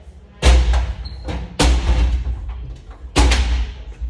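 Three heavy thuds with a deep booming low end, each dying away over most of a second: one about half a second in, one at about a second and a half, and one near three seconds.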